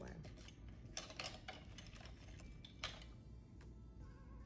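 Faint clicks and clinks of small nail supplies being moved aside on a hard tabletop, with a cluster of light taps about a second in and one louder click near the end.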